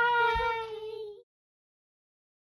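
A girl's high voice holding one long, drawn-out squeal that cuts off abruptly about a second in, followed by dead silence.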